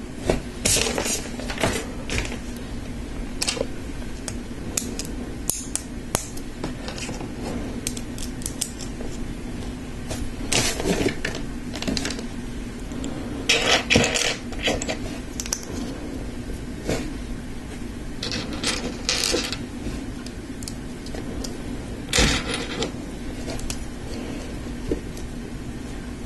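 LEGO bricks and plates clicking and clattering as they are handled and pressed together by hand: irregular sharp clicks, with a few louder bursts.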